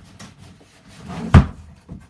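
Cardboard rubbing as the boxed iMac slides out of its shipping carton, then one heavy thud about a second and a half in as the box drops onto the floor, with a small knock just after.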